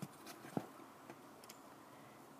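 Faint plastic clicks from hands working a Transformers Bumblebee action figure's push-to-fire missile launcher: one click at the start and a sharper one about half a second in, then a few light ticks.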